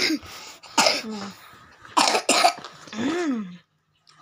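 A person coughing repeatedly: about five harsh coughs in a row, the last one voiced and drawn out.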